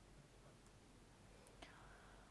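Near silence, with a couple of faint clicks about one and a half seconds in.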